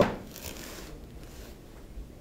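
Quiet room tone with faint pencil writing on a paper notepad on a wooden desk, after a man's voice breaks off at the very start.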